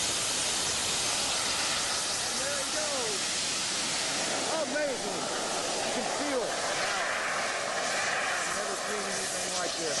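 Rocket motors strapped to a canoe firing, a loud steady hiss that runs without a break. A few voices call out over it.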